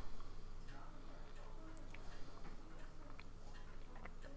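Faint, scattered clicks and light scraping of a scraper blade against a resin 3D printer's build plate, over a steady low hum.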